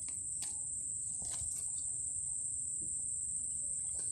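Insects trilling in one steady, unbroken high-pitched tone, like crickets, over a faint low rumble, with a few faint clicks in the first second and a half.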